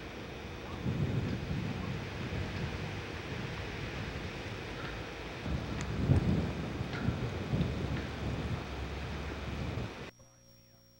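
Wind buffeting a camcorder microphone outdoors: a steady hiss with irregular low rumbling gusts, loudest about six seconds in.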